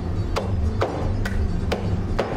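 Steel cleaver chopping through fish bones on a cutting board, about two strikes a second, over background music.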